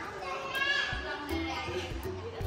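Background music, with a young child's high voice calling out briefly about half a second in.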